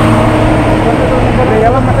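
A motorcycle engine idling steadily, with people talking over it.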